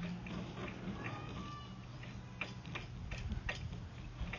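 Faint steady low hum with a scattered run of light clicks and ticks, from the sewer inspection camera's push cable being fed forward through the line.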